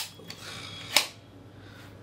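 Two sharp metallic clicks about a second apart, with a faint scrape between them, from a metal air pistol being handled and readied just before it is fired.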